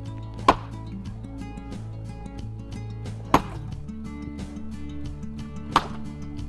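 Three sharp strikes of a heavy long-handled tool on a fire-cracked boulder, about two and a half seconds apart, over background music. The rock has been heated by a fire to crack it, so it breaks easily under the blows.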